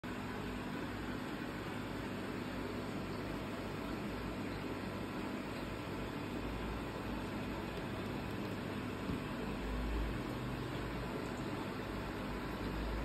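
Steady mechanical hum and hiss, with a low rumble swelling briefly about ten seconds in.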